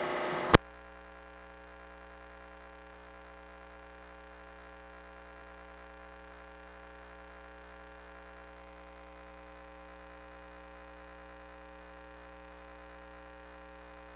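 Steady electrical hum with a faint buzz on the audio line of a sewer inspection camera system. It follows a short louder hiss that cuts off with a click about half a second in.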